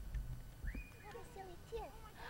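A young child's voice: a string of short, high squeals and babbling sounds whose pitch bends up and down, one rising to a held squeal, starting a little over half a second in.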